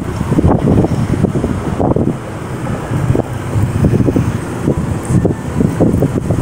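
Wind buffeting the microphone: a loud, low rumble that gusts up and down irregularly.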